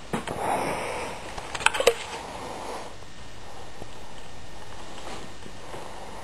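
Maine Coon cat purring close to the microphone while being brushed, with a breathy rush in the first second and a quick cluster of sharp clicks, the loudest sounds, just under two seconds in.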